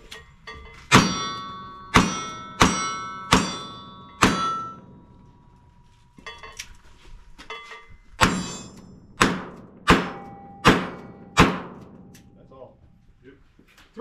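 Ten revolver shots in two quick strings of five, with a pause of about four seconds between the strings, fired at steel silhouette targets; short metallic rings from the struck steel follow the shots.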